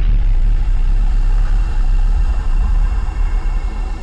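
A loud, deep rumble held steady, easing slightly near the end.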